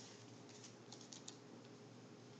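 Near silence, with a few faint, light clicks and taps in the middle from small craft items being handled.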